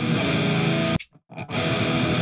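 High-gain distorted electric guitar with drums, a metal track played back through the Audio Assault Shibalba amp-sim plugin. The music cuts out for about half a second, about a second in, then comes back.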